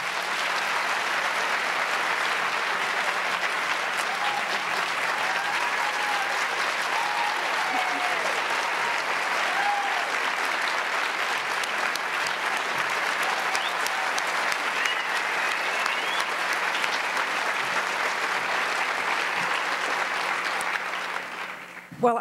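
Large auditorium audience applauding steadily for about twenty seconds, with a few faint voices calling out within it, dying away just before the end.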